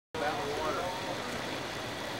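Steady outdoor background noise with faint, indistinct voices.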